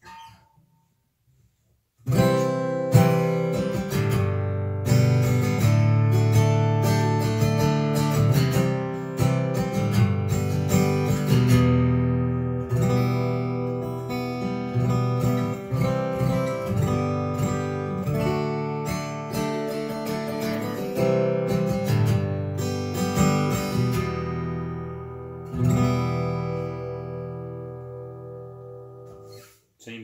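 Cole Clark Angel 2 acoustic-electric guitar played fingerstyle through an amplifier, starting about two seconds in, with the last chord fading out near the end.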